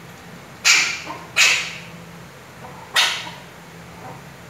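Maltese puppy giving short, sharp barks: two in quick succession, then a third about a second and a half later, begging for food.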